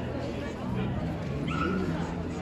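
A dog gives a short, high-pitched call about one and a half seconds in, over people talking around it.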